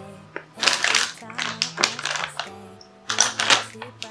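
Plastic makeup containers rattling and clacking as products are rummaged through and picked up, in two bursts, the second near the end. Background music plays underneath.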